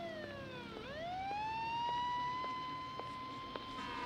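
Emergency-vehicle siren wailing in a slow sweep: its pitch falls, rises back within about a second, holds level for a couple of seconds, then starts to fall again near the end.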